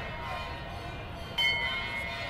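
Metal temple bell struck once about one and a half seconds in, ringing on with a clear high tone; the ring of an earlier strike is still dying away at first.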